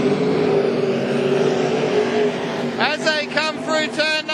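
Winged sprint car's V8 engine running hard on the dirt track, holding a steady pitch that sags slightly a little past two seconds in. A man's commentary starts about three seconds in.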